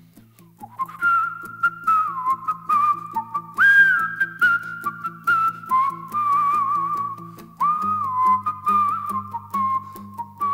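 A man whistling a melody with slides and trills over his own strummed 12-string acoustic guitar; the whistle comes in about a second in.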